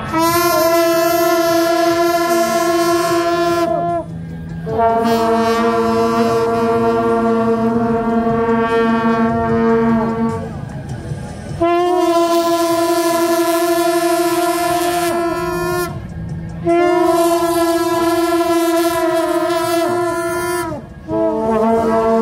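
A group of long straight brass processional horns (Taiwanese hao tou) blown together in five long held blasts of about four to six seconds each, alternating between a higher and a lower note, with short breaks between them.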